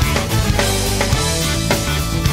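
Rock-style background music with a steady drum beat and guitar.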